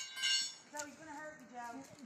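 A short, high-pitched tone with overtones starts suddenly and lasts about half a second. After it a person's voice is talking, quieter than the shouting around it.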